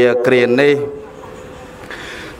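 Speech only: a man speaking Khmer in a slow, drawn-out voice, pausing about a second in.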